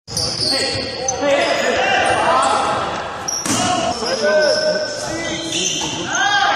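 Basketball game on a hardwood gym court: the ball bouncing on the floor and sneakers squeaking in short high chirps throughout.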